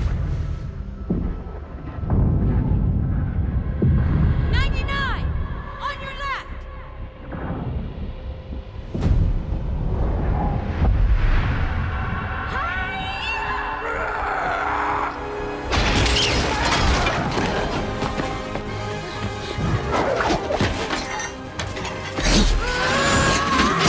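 Film action-scene soundtrack: dramatic score under heavy booms, thuds and crashes, with shattering and a woman's strained yells and effort sounds. The densest crashing noise starts about two-thirds of the way through.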